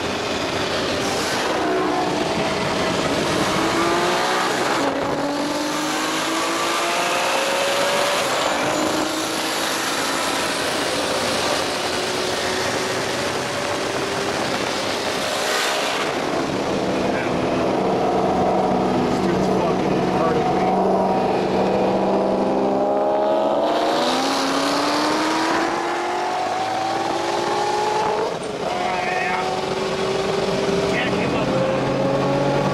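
Turbocharged Toyota Supra engine accelerating hard, heard from inside the cabin, its pitch climbing steadily through each gear and dropping back at several upshifts.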